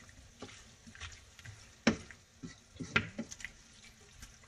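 A wooden spoon stirring ground turkey and vegetables in a stainless steel skillet, scraping and knocking against the pan, loudest about two seconds in and near three seconds, over a faint sizzle from the pan on reduced heat.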